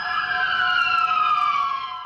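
Emergency vehicle siren wailing in a slow sweep: its pitch falls steadily after a peak and starts to climb again at the very end.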